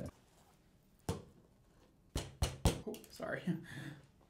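Sharp knocks and clicks of a mannequin head being fitted onto a metal tripod head stand: one about a second in, then three in quick succession about two seconds in.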